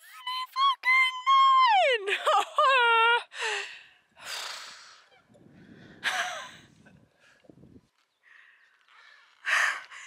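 A woman's high-pitched wordless cry, in several stretches over the first three seconds, each sliding down in pitch, followed by a few heavy breaths of someone out of breath from a steep climb.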